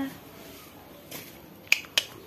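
Two short, sharp clicks about a quarter second apart near the end, over quiet room tone, just after a woman's voice trails off at the very start.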